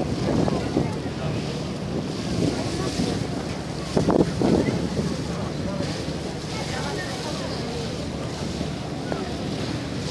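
Deck of a passenger ferry under way: steady wind on the microphone over the rush of water along the hull. People talk briefly just after the start and about four seconds in.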